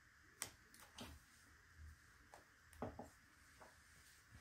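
Near silence broken by about five faint, short taps and clicks, the loudest about half a second in: fingers with long fingernails touching and pressing on the paper pages of a spiral-bound planner.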